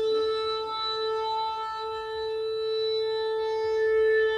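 A single long horn blast held steadily on one pitch, the sounding of the trumpet.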